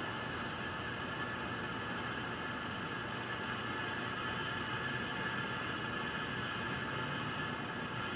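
Steady hiss of oxygen flowing at 20 liters a minute through a plastic tube into a glass bowl, with a faint steady whine over it.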